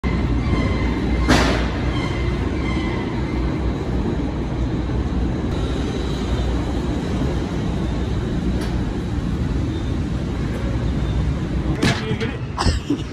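Loud, steady mechanical rumble of a package-sorting hub's conveyor machinery, with a single clank about a second in.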